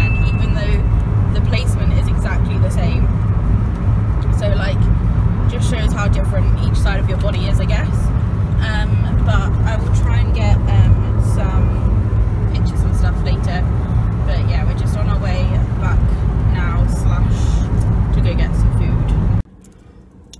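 Steady low rumble of a car's engine and tyres heard inside the cabin while driving, with indistinct voices over it. It cuts off suddenly near the end.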